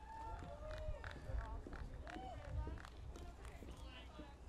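Faint, distant voices over a low steady rumble, with a series of light clicks of heeled footsteps crossing a stage.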